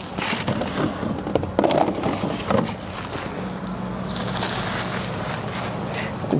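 Rustling and light knocks of bed linen and care supplies being handled, with a steady low hum setting in about halfway through.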